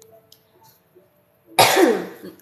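A woman clears her throat with one short, loud cough near the end.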